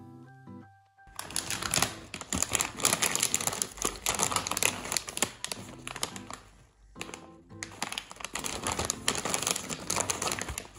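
Crinkling of a plastic potato chip bag as it is picked up and handled. It runs in two long stretches, with a brief pause a little before the end.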